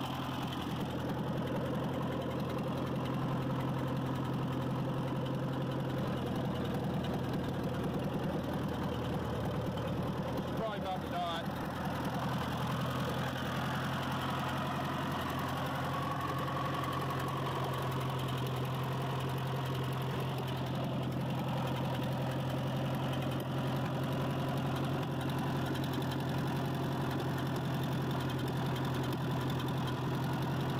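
Ford 8N tractor's four-cylinder flathead engine running steadily at idle, freshly started for the first time after years of sitting.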